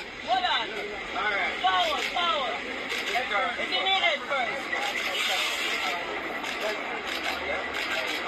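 A crowd of people talking and calling out over one another, with no clear words, over outdoor background noise.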